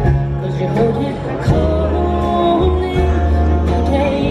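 Live country band playing, with acoustic and electric guitars.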